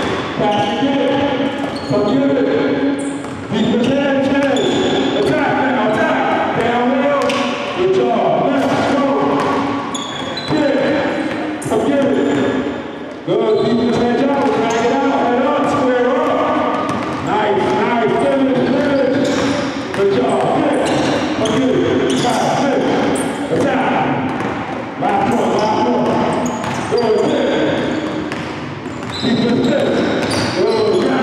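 Basketballs dribbled on a hardwood gym floor, repeated sharp bounces, amid voices in a large echoing gym.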